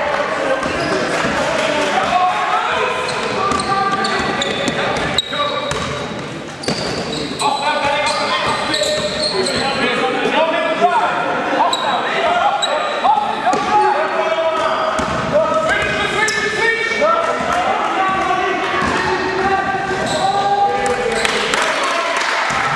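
Basketball bouncing on a sports hall floor amid players' indistinct shouts, all echoing in the large hall.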